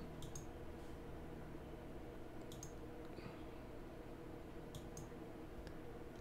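A few faint, sharp computer mouse clicks: a quick pair just after the start, a single click midway and another quick pair near the end, over a steady low room hum.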